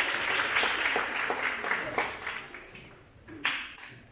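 Audience applause dying away: a dense patter of clapping that thins to a few scattered claps near the end.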